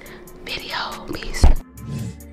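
Outro transition effect: a brief sweeping sound, then a loud low thud about one and a half seconds in. Steady low music tones of the end screen follow it.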